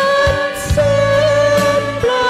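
Thai Christian worship song: a held sung melody over a steady bass line and light percussion.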